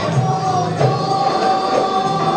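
A group of men's voices chanting together, holding long notes, in the manner of sung Islamic devotional chant.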